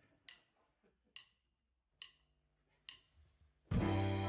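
Four sharp wooden clicks, evenly spaced just under a second apart: a drummer's stick count-in. The big band comes in loudly on brass and saxophones near the end.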